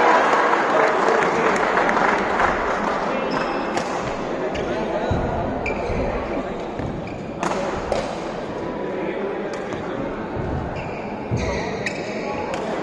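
Badminton rally in an indoor sports hall: sharp smacks of rackets hitting the shuttlecock several times in the second half, with short high squeaks of shoes on the court, over a steady murmur of spectators talking.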